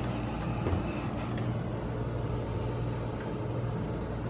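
Refrigerator-freezer running with its freezer door open: a steady low hum, with a couple of faint clicks.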